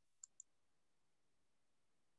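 Near silence, broken by two faint clicks about a fifth of a second apart just after the start.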